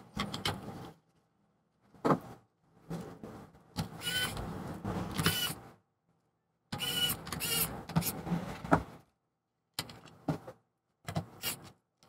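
Plastic laptop speaker assemblies being handled and pressed into place in an opened MacBook Pro's aluminium case. The sound comes in several short bursts of scraping and clicking, some with brief squeaks.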